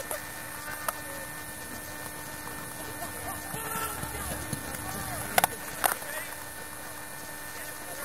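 Players' voices calling out faintly across an open sports field, with two sharp knocks about half a second apart a little past the middle.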